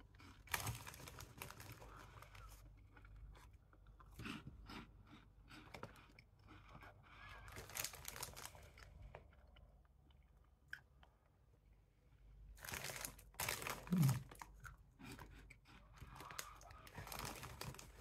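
A person chewing crunchy baked maize puff snacks with the mouth close to the microphone: a run of short crunches, softer through the middle and denser again about two-thirds of the way in, with a brief low hum of the voice.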